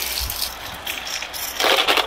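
Glass marbles rolling across plastic GraviTrax track tiles and metal rails, with scattered clicks, then a burst of clatter near the end as they knock into each other.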